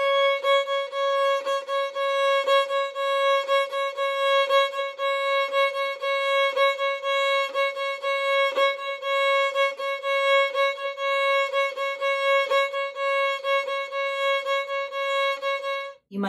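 Violin playing a repeated C-sharp on the A string in shuffle bowing. The single pitch holds steady while the bow re-strikes it in an even, driving rhythm of long and short strokes.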